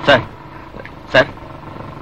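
A man calls out "sir" twice, about a second apart, over the steady running of a motorcycle engine idling.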